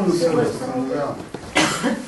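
Low speech, then a person coughing once, a short sharp burst about one and a half seconds in.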